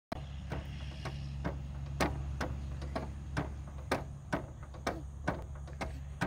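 Spring seesaw creaking and clicking about twice a second as it rocks up and down, some strokes with a short squeak, over a steady low hum.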